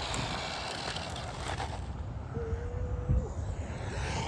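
Electric RC cars running on asphalt, with a faint high motor whine early on and a brief steady hum about two and a half seconds in, over an even outdoor rumble.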